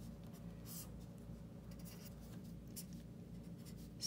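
Felt-tip marker writing numerals on paper: a few faint, short strokes.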